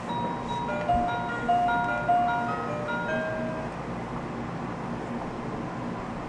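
Baby toy's electronic tune: a simple melody of single beeping notes that plays for about three and a half seconds and then stops, set going by moving the toy's flower.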